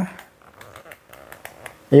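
A man's voice trails off, then a quiet pause with a few faint clicks and rustles of a plastic-bodied power tool and its cord being handled, before speech resumes near the end.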